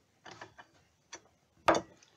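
A few short puffs and mouth clicks as a man draws on a tobacco pipe held in his teeth, ending in one sharp click near the end.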